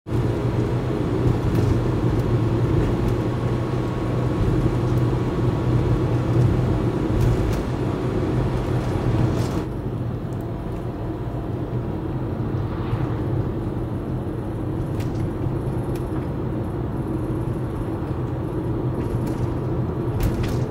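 Cabin noise of a Toyota Hiace camper van being driven: a steady low rumble of engine and road noise under a hiss of tyres and wind. About halfway through the hiss drops away abruptly, leaving a quieter rumble.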